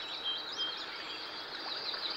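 Small birds chirping in short, repeated calls over a steady hiss of outdoor background noise.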